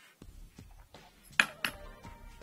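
Two sharp clicks of hard laptop parts being handled as the disconnected screen panel is lifted away, the first the louder, about a second and a half in, with quiet handling noise around them.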